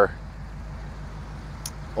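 Ford 8BA flathead V8 idling steadily through a dual exhaust with glasspack mufflers, a low, even hum.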